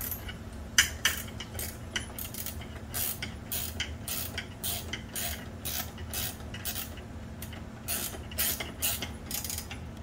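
Wrench and hex key tightening a lock nut on a steel fork's head tube bolt: a run of short metallic clicks and clinks, about two a second and uneven, over a steady low hum.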